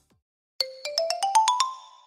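A short rising jingle: silence, then about half a second in, some eight bell-like notes climbing step by step in pitch and coming faster, each ringing briefly and dying away near the end.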